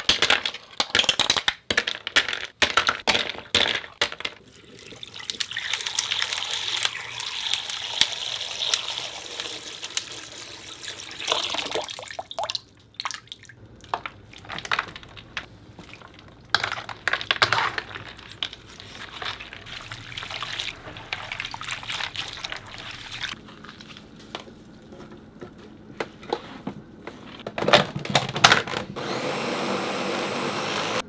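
Ice cubes clinking as they drop one after another into a wooden bowl, then stretches of water sounds: splashing and sloshing as blanched ramp greens are lifted and dropped into an ice-water bath.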